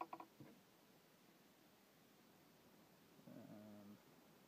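Near silence, with a few faint short sounds in the first half-second and a faint low pitched sound, under a second long, near the end.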